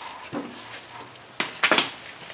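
A quick cluster of sharp metallic clanks and clinks about one and a half seconds in, from wrench and socket work on a car's front suspension, over faint shop room tone.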